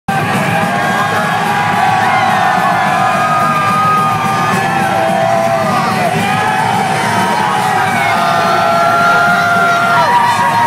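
Loud music with a crowd yelling and whooping over it, steady throughout, in a large hall.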